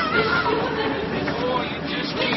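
People's voices chattering, with a held sung note trailing off in the first moments.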